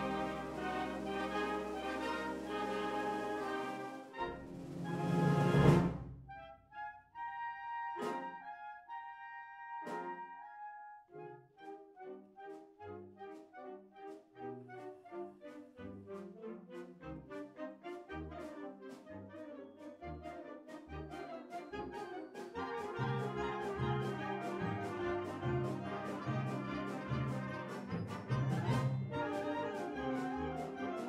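Concert wind band of clarinets and brass with tuba playing in rehearsal. A full sustained chord swells to a loud accent about six seconds in. A quieter passage with sharp accented notes follows, building into an evenly pulsed rhythmic figure that grows fuller over the last several seconds.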